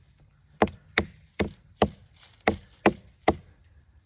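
A hand-held rock tapping a leafless common milkweed stalk seven times: a run of four light knocks, a short pause, then three more, about two and a half a second. The taps are kept light so they crack the stalk open along its length, freeing the fibres without smashing them.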